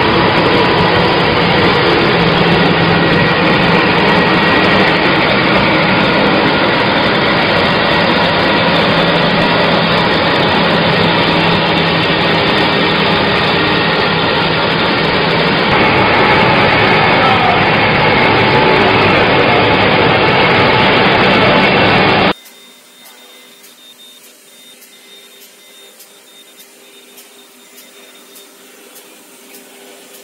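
Kraft paper slitter-rewinder running loudly and steadily as it cuts and winds paper, with a change in its sound about two-thirds of the way through. It cuts off abruptly to a much quieter, low steady hum.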